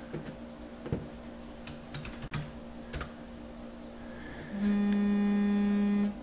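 A few scattered keyboard or mouse clicks, then about three-quarters of the way in a steady buzzing tone that holds for about a second and a half before cutting off. A faint hum runs underneath.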